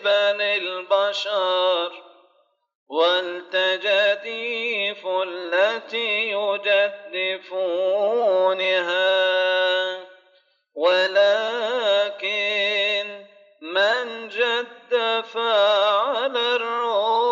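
A male voice chanting a Coptic liturgical melody in long, wavering melismatic phrases, pausing briefly for breath about two and a half seconds in and again about ten seconds in.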